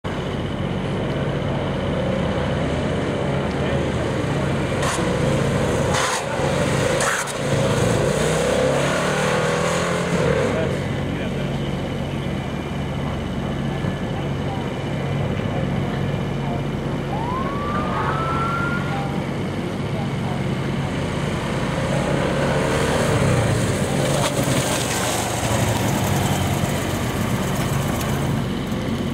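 Police motorcycle engines running with a steady low hum, swelling louder twice, about a quarter of the way in and again near the end, with a brief rising squeak a little past halfway.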